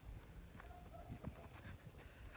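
Near silence: faint low wind rumble on the microphone with a few soft footsteps on the ground.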